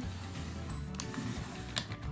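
Soft background music, with faint clicks and scraping from a Fiskars paper trimmer's blade being run along its rail to slice washi tape.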